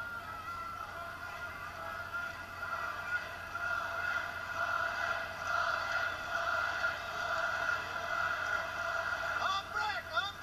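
Music and voices from the fight broadcast, played through a television speaker and sounding thin, with no bass; a voice comes in near the end.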